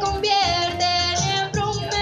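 Music: a high-pitched singing voice with a wavering vibrato over instrumental accompaniment.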